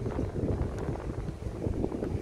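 Wind buffeting the microphone, a gusty low rumble.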